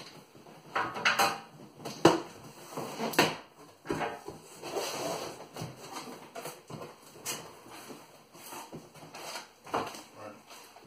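Cardboard box being opened: a knife slitting the packing tape, then the flaps pulled open and the contents handled. Irregular scrapes, rustles and knocks; the sharpest knock comes about two seconds in.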